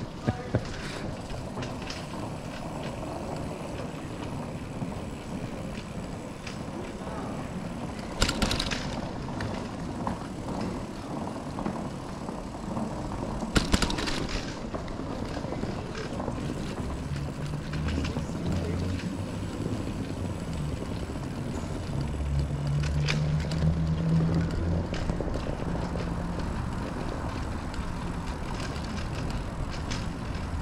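Bicycle rolling over brick street pavers, a steady rolling noise from the bike with a few sharp rattles, about three in all, as it goes over bumps.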